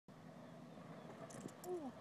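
Skateboard wheels rolling on asphalt, a faint steady low rumble, with a few light clicks about a second and a half in and a short voice sound near the end.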